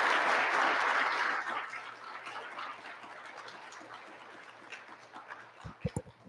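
Audience applauding, the clapping dying away over the first two seconds. A couple of low thumps just before the end as the podium's gooseneck microphone is handled.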